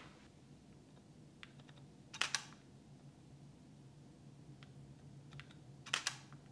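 Camera shutter fired twice, about four seconds apart, each time a quick pair of sharp clicks. Faint handling ticks fall in between, over a low steady hum.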